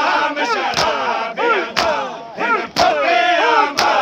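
A crowd of men chanting a noha in unison, voices rising and falling together, while they beat their chests in matam: a sharp chest-slap lands about once a second.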